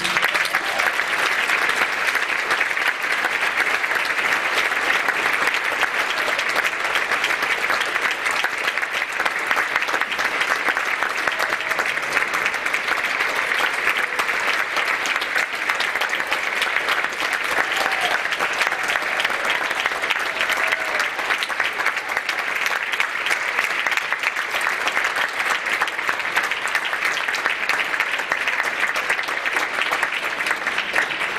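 Concert audience applauding steadily at the end of a band piece.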